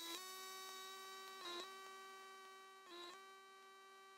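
Faint background music: a held electronic chord with brief changes about every second and a half, fading to near silence.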